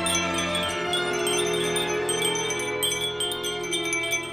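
Japanese glass wind chime (fūrin) tinkling repeatedly, its overlapping tones ringing on.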